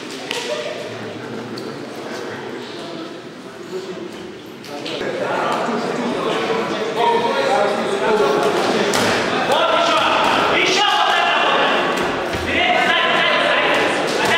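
Several voices shouting in a large sports hall around a boxing ring, getting louder from about five seconds in, with a few sharp thuds of boxing gloves landing.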